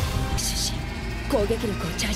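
Anime soundtrack music playing, with a short hiss about half a second in. A character's voice begins speaking in the second half.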